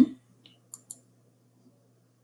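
A few faint computer mouse clicks, two close together just under a second in, over a faint steady low hum.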